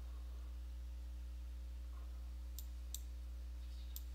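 A few faint computer mouse clicks, the last three close together near the end, over a steady low electrical hum.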